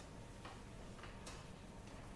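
Near silence: a faint hiss with about four soft, irregular clicks.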